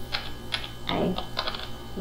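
Computer keyboard keys tapped: a short run of about seven irregular clicks, over a low steady mains hum.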